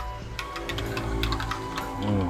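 A metal spoon clinking and scraping against a glass measuring cup while milk tea is stirred, with a run of light clicks in the first half, over steady background music.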